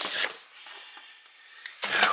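Faint rustle of paper files being handled in a quiet room.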